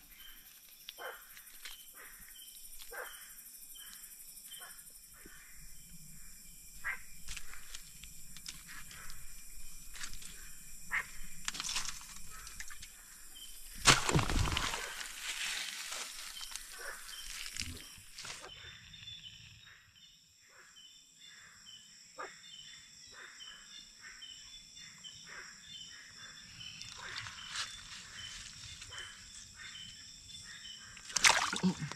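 Rustling of wet bamboo leaves and small splashes and knocks as hands feel through a shallow rocky stream for frogs at night. Behind it is a steady, faintly pulsing chorus of night insects and frogs, with one louder noise about halfway through.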